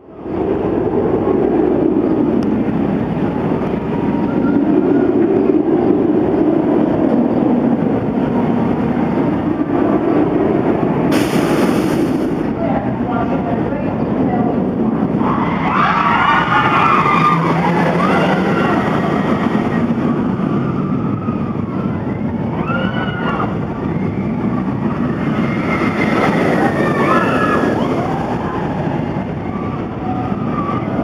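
Riders screaming on the Wicked Twister, a launched Intamin impulse roller coaster, starting about halfway through as the train runs out of the station and up its twisted tower. Under the screams there is a steady rumble of the moving ride.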